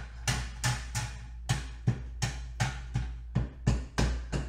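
Felt-pad ink dauber tapping repeatedly on thin metal tree cutouts lying on a glass mat, an even run of sharp knocks at about three a second.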